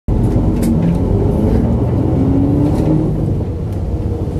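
Steady low rumble of a moving vehicle heard from inside, with faint motor tones that rise and fall in pitch and a few light ticks.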